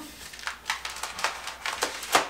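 Plastic privacy film being peeled off a door's glass window by hand, giving an irregular run of crinkling and crackling, loudest near the end.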